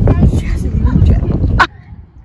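Women's voices and laughter over heavy wind rumble on a phone microphone, ending in a short high shriek. About three-quarters of the way through the sound cuts off suddenly to a much quieter background.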